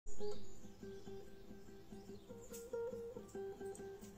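Classical guitar being fingerpicked: single plucked notes one after another in a repeating pattern, the first note the loudest.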